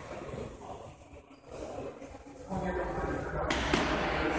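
Indistinct voices in a sports hall, getting busier about two and a half seconds in, with a sudden sharp sound about half a second before the end.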